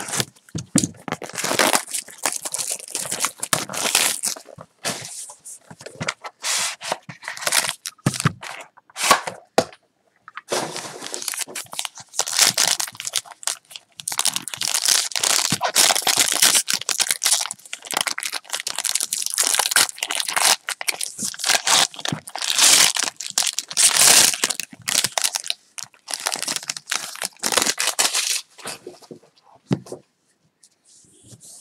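A trading-card box is cut open with a small blade, then a foil card pack is torn open and crinkled, heard as repeated bursts of crackling, tearing and rustling that are loudest in the middle stretch.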